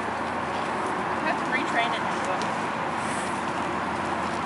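Steady outdoor background noise at an even level, with a faint distant voice briefly a little over a second in.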